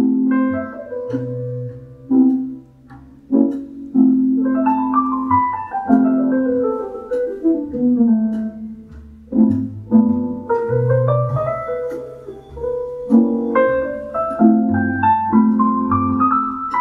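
Piano music played through a small back-loaded horn speaker with a 3-inch full-range driver: struck melody notes ringing over held low bass notes.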